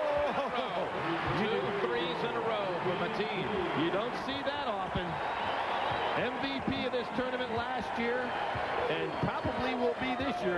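Arena sound of a live college basketball game on a TV broadcast: a basketball bouncing on the hardwood over a steady wash of crowd voices and shouts.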